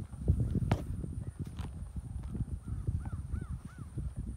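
Hoofbeats of a pony being ridden, a dense run of low thumps with a few sharp clicks. Near the end a bird calls three short rising-and-falling notes.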